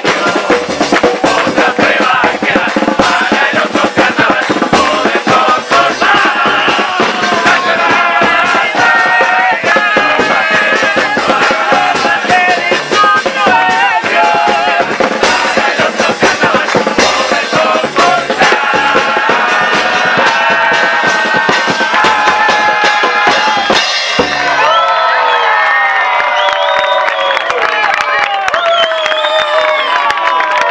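A crowd of murga members singing together over rhythmic drumming. About 24 seconds in the drums stop and the voices carry on with shouts and cheering.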